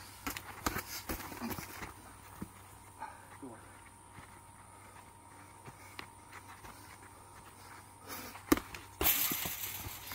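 Boxing sparring: gloved punches smacking and feet scuffing on packed dirt, heard as scattered impacts, most of them in the first two seconds. One sharp smack comes about eight and a half seconds in, followed by a burst of noise lasting about a second.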